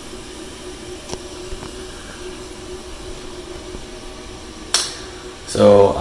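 A steady low hum with a couple of faint clicks, then one sharp knock about three-quarters of the way through; a man's voice starts just before the end.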